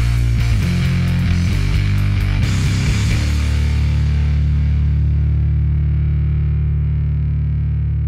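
Electric bass played through a fuzz and a Boss OC-5 octave pedal, a distorted riff of quick low notes, then about three seconds in a single low note is held and left to ring out, slowly fading.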